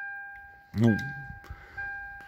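Warning chime of a fourth-generation Toyota 4Runner with the driver's door open: a single-pitched ding that rings and fades, sounding twice, about a second and three-quarters apart.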